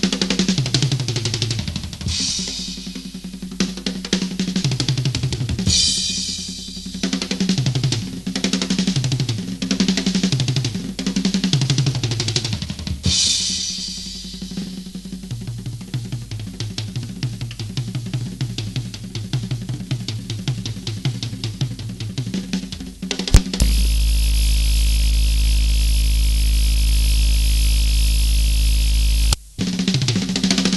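Live progressive rock band playing: a drum kit with cymbal crashes over keyboards and guitar, recorded straight from the mixing desk, so the bass guitar is missing from the mix. Near the end, a loud steady buzz cuts in over the music for about six seconds and stops suddenly.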